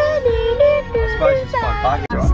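Music with a sung melody over a steady low bass, the voice sliding through quick runs near the end.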